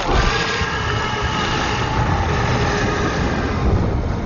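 Giant dragon's deep roar, a film sound effect: loud and steady, with a heavy low rumble.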